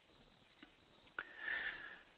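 A pause with a faint click, then from about a second in a breath drawn in through the nose, lasting under a second, as a speaker inhales before talking.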